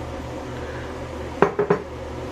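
Three quick clinks of dishware about one and a half seconds in, as the cup just emptied of milk is set down, over a steady low hum.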